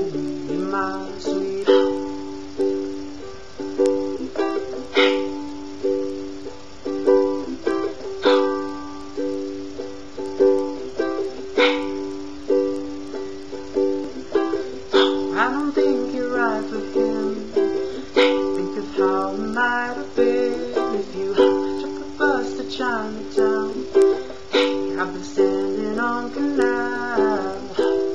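Ukulele strumming a steady chord pattern, with a hard accented strum about every three seconds.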